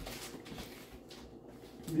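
Faint rustling of a plastic food wrapper being handled and opened, in the first half second, then a man's voice starting right at the end.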